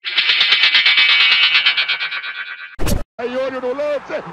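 An electronic sound effect: a dense, buzzy high-pitched tone that lasts nearly three seconds and fades, ended by a short sharp burst, with a voice coming in about a second later.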